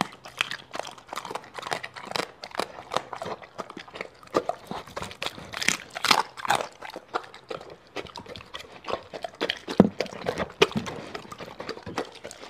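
Doberman eating raw meat and fruit off a plate right by the microphone: a continuous run of irregular wet chewing, licking and smacking, with a sharper click near the end.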